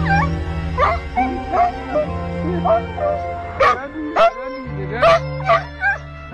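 A dog giving a string of short, sharp yelps and whines, about eight cries with sliding pitch, in the excitement of greeting its owner after being lost. Background music plays throughout.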